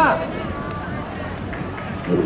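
A man's loud announcing voice breaks off with a falling note at the start, leaving steady open-air background noise with faint distant voices.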